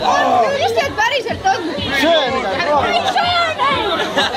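Several people talking over one another in lively group chatter.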